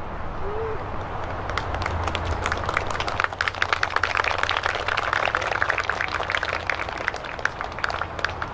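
Applause from a small group, picking up about a second and a half in and thinning out near the end, over a steady low rumble.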